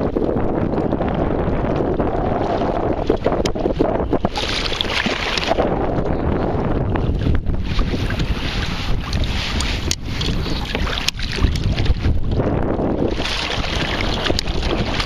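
Kayak paddle strokes splashing through choppy water in surges every few seconds, over steady wind buffeting the microphone, with a few sharp knocks.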